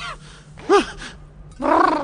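Cartoon robot dog's voice, non-verbal: a short rising-and-falling vocal sound about two-thirds of a second in, then a louder, longer fluttering vocal sound starting near the end.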